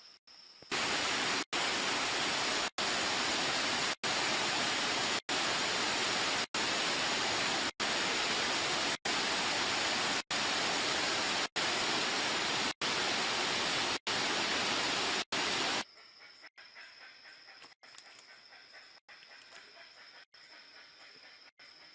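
Rushing water of a rainforest stream tumbling over rocks: a loud, steady rush that starts abruptly about a second in and stops abruptly near the end, broken by short silent gaps about every second and a quarter.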